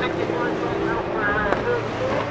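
Several stock car engines racing together around a bend, their pitches rising and falling as the drivers accelerate and lift off.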